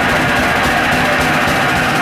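Heavy metal band playing live, loud and steady: distorted electric guitars over drums, with no singing.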